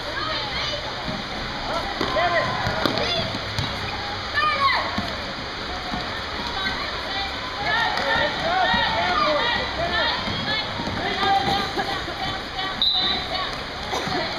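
Indoor basketball game: sneakers squeaking in short chirps on the court floor as players run, amid indistinct shouts from players and spectators.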